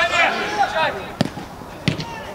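Players shouting, then two sharp thuds of a football being struck, about two thirds of a second apart.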